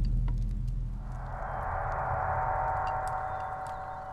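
Dramatic soundtrack music: a deep drum hit dies away, then about a second in a sustained, eerie gong-like tone swells in and holds.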